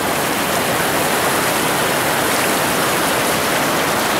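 Shallow river water rushing over rock shoals and ledges in small rapids, a steady, even rush with no pauses.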